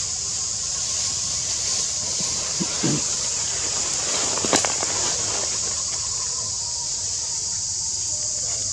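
Steady high-pitched drone of forest insects. A brief low sound comes about three seconds in, and a short cluster of clicks about a second and a half later.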